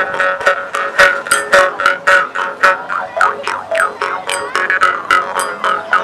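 Two jaw harps (Jew's harps) played together: a steady twangy drone under quick, rhythmic plucking, about four plucks a second, with the overtones sliding up and down as the players change the shape of their mouths.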